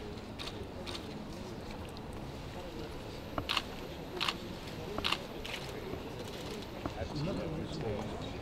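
Low murmur of voices in a large conference hall, broken by a handful of sharp camera shutter clicks in the middle.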